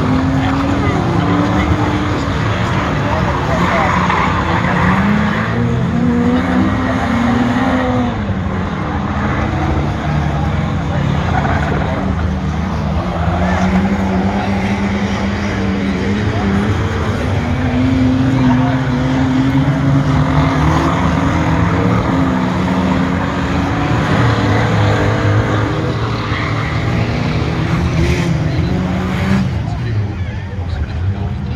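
Streetstock race cars lapping a dirt oval, their engines rising and falling in pitch again and again as they back off into the turns and accelerate out.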